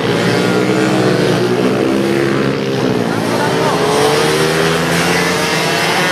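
A pack of mini motorcycles racing past together, many small engines running at once, their overlapping notes rising and falling as the riders accelerate and ease off through the corners.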